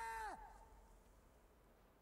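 A woman's long shout on a film trailer's soundtrack, held on one high pitch, then falling away sharply about a third of a second in. The rest is near silence.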